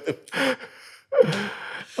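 A man's breathy vocal sounds as a laugh winds down: a short voiced burst, then about a second in a loud, breathy, gasp-like exhale lasting nearly a second.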